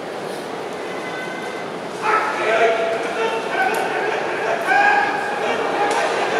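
Sumo referee's drawn-out calls of "hakkeyoi" and "nokotta" start about two seconds in, as the wrestlers charge and grapple. The crowd in the hall grows louder at the clash.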